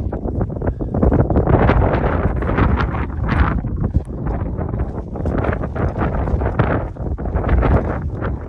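Strong wind buffeting the microphone on an exposed mountain ridge, loud and gusting unevenly, with rumbling surges.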